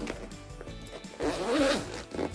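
Zipper on a fabric pencil case being pulled, a loud rasp lasting under a second that starts a little over a second in.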